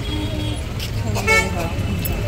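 Busy street traffic: engines rumbling low and steady, with short vehicle horn toots, a fading one at the start and a louder one about a second and a quarter in.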